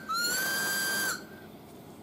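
A whistle blast, high-pitched, gliding up in pitch as it starts and then held steady for about a second before cutting off.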